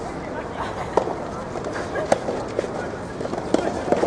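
Soft tennis rubber balls being struck, about four sharp pops over a few seconds, against open-air hubbub and distant voices at the courts.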